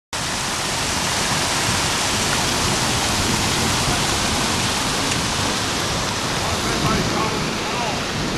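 Loud, steady rush of floodwater pouring over a washed-out road edge into the collapse. Faint voices come in near the end.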